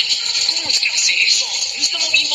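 Dialogue and background sound from an anime episode played back through a mobile phone's speaker: a voice in short phrases over a steady hiss.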